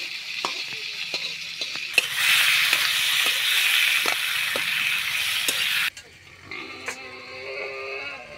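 Tomato wedges sizzling in hot oil in a metal karahi as a metal spatula stirs them, tapping and scraping the pan every half second or so. The sizzle grows much louder about two seconds in, then stops suddenly near six seconds.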